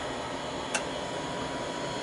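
Steady background hiss with a faint steady hum, and one light click about three-quarters of a second in.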